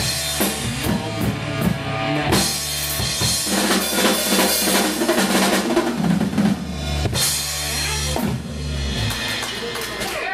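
Live rock band playing the closing bars of a song, with the drum kit loudest over electric bass and guitar, and cymbal crashes at about two and a half and seven seconds in.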